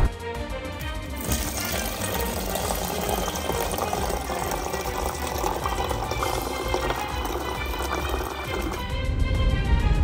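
Water from a refrigerator door dispenser running in a stream into a plastic shaker cup. It starts about a second in and stops near the end, over background music.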